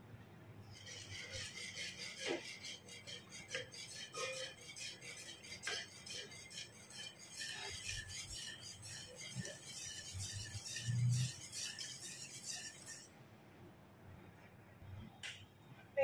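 Wire whisk stirring a thin cornstarch-and-coconut-milk mixture in a metal pot, its wires ticking and scraping rapidly against the pan with a few louder knocks; the stirring stops about 13 seconds in.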